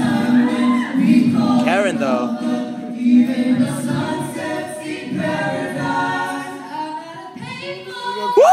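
A five-voice a cappella group singing through microphones in close harmony, with a low voice holding a steady note under the others in the first few seconds; the singing grows quieter near the end.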